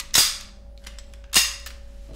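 Two sharp metallic clacks about a second apart as a semi-automatic pistol is handled and its mechanism worked.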